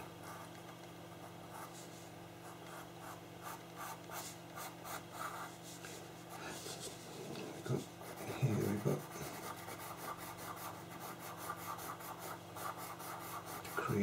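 Pastel pencil scratching across textured pastel paper in rapid short shading strokes. There is a brief low sound about eight seconds in.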